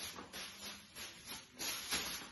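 Thin plastic shopping bags rustling and swishing as they are thrown up and caught by hand, a series of soft rustles that grow a little louder near the end.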